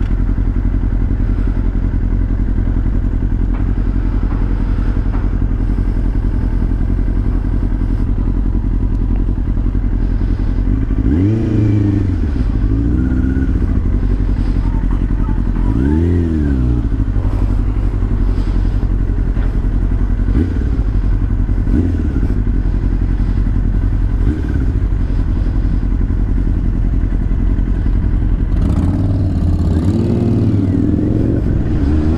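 2005 Yamaha YZF-R6's 600 cc inline-four running at low revs while filtering through slow traffic. The revs rise and fall briefly about eleven and sixteen seconds in, and climb again near the end as it pulls away.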